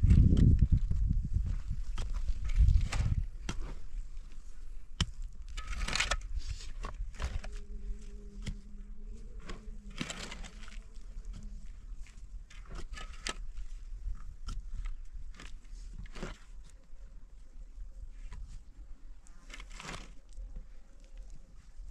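Digging tools scraping and chopping into dry, stony soil in irregular strokes, loudest in the first few seconds.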